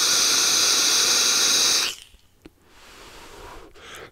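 Eleaf Ello Pop sub-ohm vape tank being drawn on at 85 watts: a steady hiss of air pulled through the tank over the firing coil, stopping suddenly just under two seconds in, followed by a quieter, breathy exhale of the vapour.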